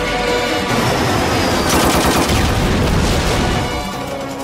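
Dramatic film-trailer music mixed with a dense, rapid clatter of sharp bangs, like action-movie gunfire, loudest about halfway through.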